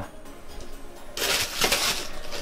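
Plastic bags crinkling as they are handled inside a wooden box, starting about a second in.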